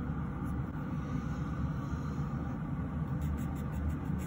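Manicure-table dust collector fan running steadily, a low, even whir, with faint light rustling near the end.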